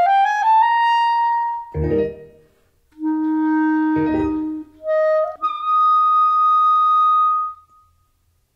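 Clarinet playing a solo phrase: a rising run to a held high note, two short accented low notes and a held low note, then a long sustained high note that closes the piece and stops cleanly near the end.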